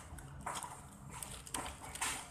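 Plastic-packaged goods being handled in a cardboard box: a few short rustles and clicks about half a second apart.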